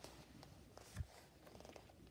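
Near silence with faint handling of an open paperback picture book, including a soft, low thump about a second in.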